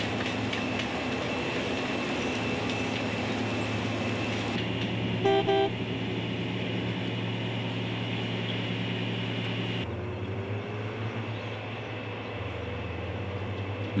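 Heavy diesel earthmoving machinery running steadily: a road trimmer milling compacted formation-layer fill, with its conveyor dropping the spoil into a dump truck. A short horn toot sounds about five seconds in, and the engine note changes abruptly twice.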